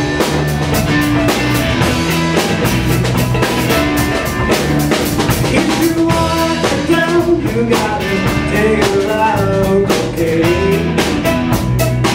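Live blues band playing: electric guitars over a drum kit, with a bending lead line in the second half.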